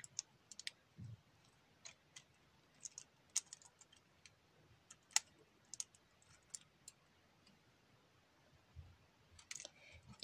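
Faint, irregular clicks of plastic LEGO pieces as they are handled and fitted together.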